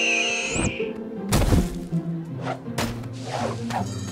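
Cartoon score with sustained chords, a high warbling tone in the first half second, and a single thud about a second and a half in.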